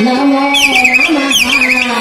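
A stage singer's voice holding a long note, amplified through a microphone, with two high warbling, whistle-like chirps partway through.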